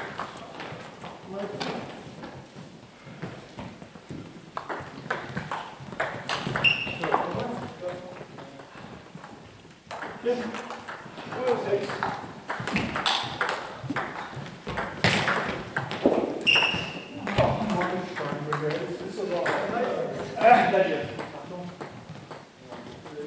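Table tennis balls clicking off rackets and tables in a rally, an irregular run of sharp ticks, with people talking in the background.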